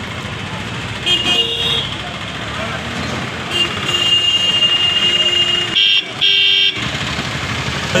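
Vehicle horns honking in street traffic: a short honk about a second in, a longer held one, then two loud short blasts, over crowd chatter.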